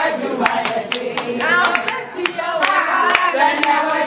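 A group singing a song together with rhythmic hand clapping, about three claps a second.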